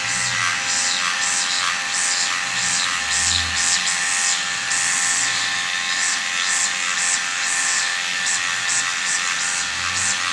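Dermapen 4 electric microneedling pen running with a steady buzzing hum as it is worked over the skin of the face, with irregular higher hissing pulses over it.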